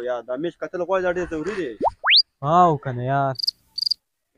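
Men's voices, a quick steep upward whistle-like glide about two seconds in, then two short bursts of high cricket chirping near the end.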